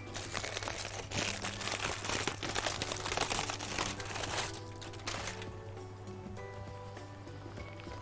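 Aluminium foil crinkling and rustling as a foil-wrapped roll is pulled open by hand, busy for about five seconds and then dying away, with soft background music underneath.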